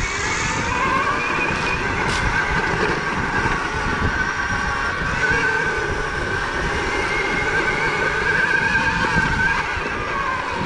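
Electric motor and drivetrain of a KTM Freeride E-XC dirt bike whining steadily under way, its pitch drifting a little up and down with speed. Underneath is the rumble and rattle of the bike running over a dirt trail.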